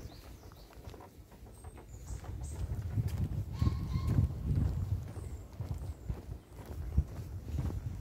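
Footsteps on a park boardwalk, walking at an even pace, with low rumble from the hand-held phone. Several short, high, thin chirps come from birds about two seconds in.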